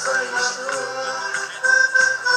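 Live folk music played by a group on stage through the PA speakers: a sung melody over instruments, with a regular percussive beat.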